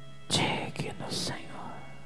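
A man whispering into a handheld microphone: one short breathy, hissing phrase about a quarter of a second in, over a soft sustained music pad.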